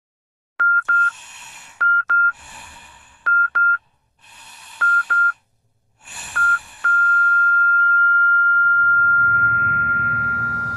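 Hospital heart-monitor sound effect: paired beeps about every one and a half seconds over laboured breathing. About seven seconds in, the beeping turns into one continuous flatline tone, the sign of the heart stopping. Soft music fades in under it near the end.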